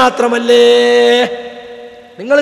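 A man's voice drawing out a single syllable on one steady pitch for under a second, then trailing off to quiet.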